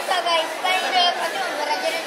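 Background chatter: several people talking at once, the voices high-pitched and indistinct.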